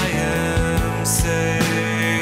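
Band music: electric guitar and bass with a drum kit keeping time, an instrumental stretch without singing.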